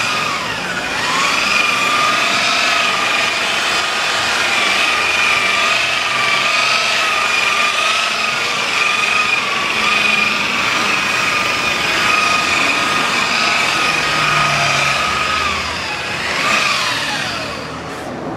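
Electric angle grinder fitted with a wool buffing pad, running at speed with a steady high whine as it buffs a painted car body panel. The pitch dips briefly about a second in and recovers, then falls away sharply near the end as the tool slows down.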